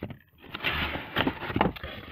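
Cardboard toy packaging being handled and scraped, a rough rustling scrape with a couple of sharp knocks.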